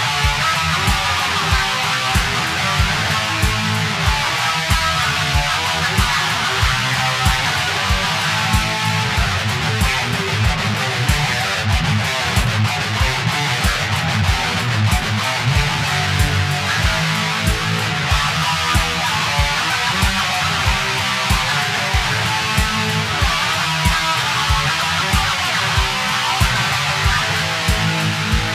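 Guitar played without vocals over a steady beat of about two strokes a second.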